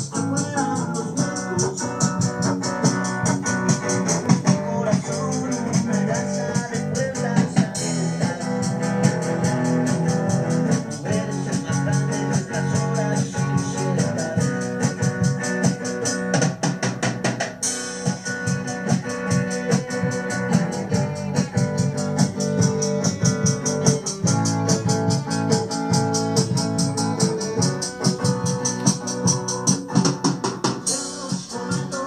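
Rock band music: electric guitars and drums with an organ-like keyboard, over a steady cymbal beat.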